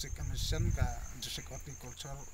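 A man talking, with a high, steady pulsing insect trill behind his voice. A low rumble on the microphone swells in the first second.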